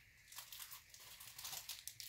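Faint rustling and crinkling of paper sheets being handled, a run of small soft crackles.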